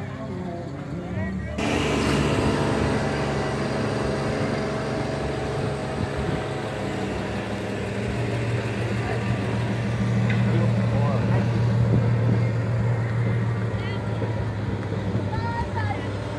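Generator running in the background with a steady low hum, starting about two seconds in.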